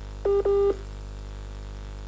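Two short electronic beeps at one steady pitch in quick succession, from the telephone line of a call patched into the studio, the sign that the call has cut out. A steady electrical mains hum runs underneath.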